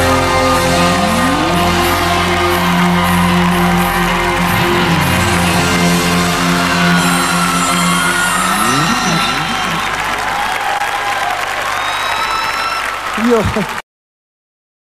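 Live band music: the closing bars of a song, with held chords and sliding notes that thin out, a last swell, then a sudden cut to silence just before the end.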